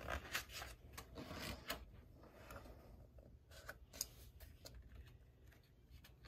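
Faint rustling and a few soft flicks of paper as the pages of a paperback workbook are turned.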